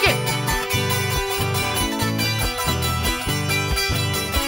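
Live band playing dance music with a steady beat.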